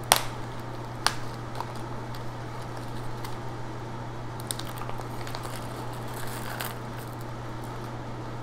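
Thin plastic bead bag being pulled open and handled, with short crinkling noises and a couple of sharp clicks in the first second, over a steady low hum.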